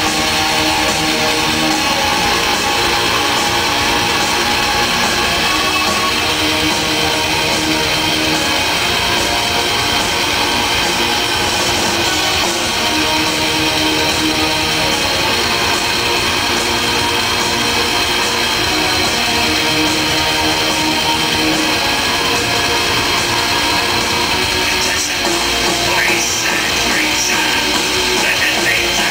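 Black metal band playing live at full volume: distorted electric guitars over drums in a dense, unbroken wall of sound.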